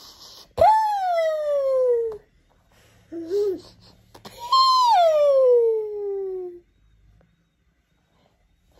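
A high, squealing voice makes two long calls, each sliding steadily down in pitch, with a short wobbly squeak between them. It is playful noise-making over a shoe held up to the face.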